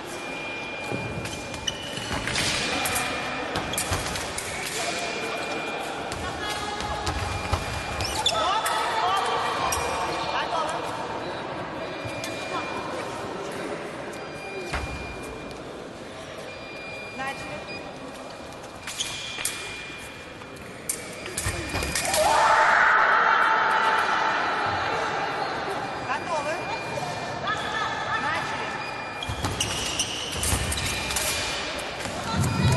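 Fencers' footwork on a sports-hall floor, with shoe squeaks, thuds and distant voices echoing around a large hall; a louder burst of sound comes about 22 seconds in.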